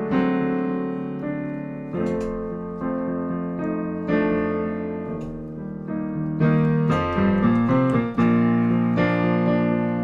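Digital piano playing the slow instrumental intro of a ballad, with a fresh chord struck about every second and each one left to ring.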